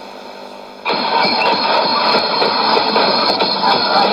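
Voice of Greece shortwave broadcast on 9420 kHz AM, heard through a Sony ICF-2001D receiver's speaker. A brief lull of carrier hiss gives way about a second in to the station's music, which starts suddenly and plays on loudly with the narrow, muffled sound of AM shortwave reception.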